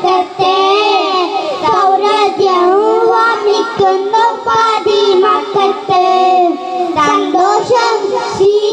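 Young boys singing a melodic song together into microphones, with wavering, ornamented pitch lines and no pause.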